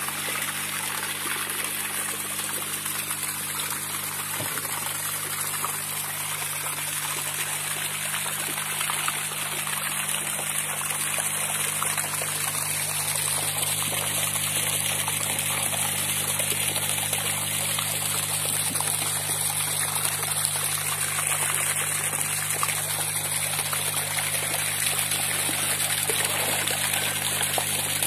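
Water pouring steadily from a pipe into a tarpaulin-lined fish tank and splashing on the agitated surface, with a steady low hum underneath.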